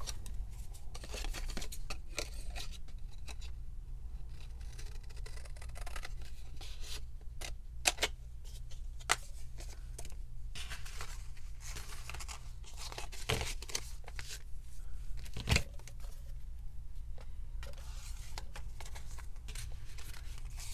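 Scissors cutting paper in a run of separate snips, with paper rustling and being handled between the cuts.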